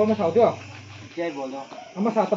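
People talking, with a low steady hum underneath that stops about a second in.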